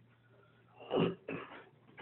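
A person coughing: one short cough about a second in, then a second, weaker one just after.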